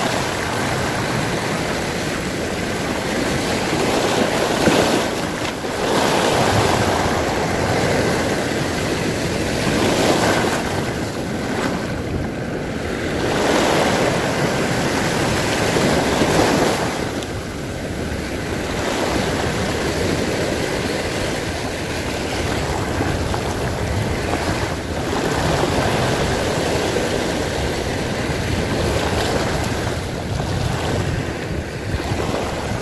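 Small sea waves washing in and breaking on the shore just below, rising into a louder foaming surge every few seconds.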